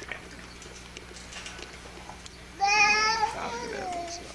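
A loud, high-pitched cry about two and a half seconds in, lasting about a second and sliding slightly down in pitch at the end.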